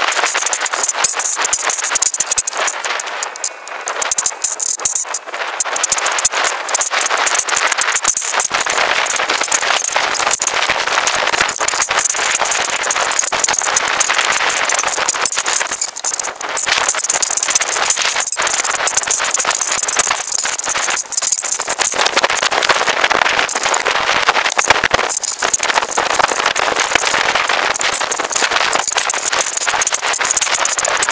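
Leaves and twigs rustling and scraping against a small camera mounted in a tree, a dense crackling noise with many small clicks over a steady high hiss.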